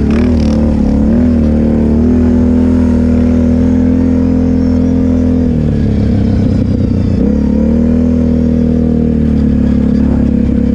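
Kawasaki quad's engine running under the rider at a steady high pitch as it rides across sand. It wavers with small throttle changes in the first couple of seconds, eases off for about two seconds just past midway, then picks back up.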